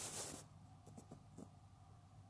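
A brief rustling hiss close to the microphone at the very start, then a few faint ticks, over quiet room tone.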